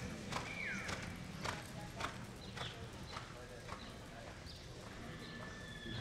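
Horse's hooves striking soft arena dirt at a lope, short dull beats about two a second.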